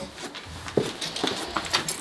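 Scattered footsteps, scuffs and small knocks of someone picking their way over debris and broken boards, with one short pitched sound a little before the middle.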